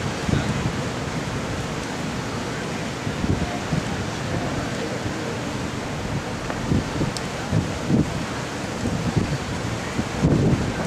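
Heavy storm surf breaking and rushing, with wind buffeting the microphone; the gusts give low thumps several times in the second half.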